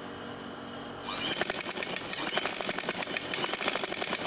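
Domestic sewing machine stitching a pleat into kameez fabric: a fast, even run of needle clicks starting about a second in.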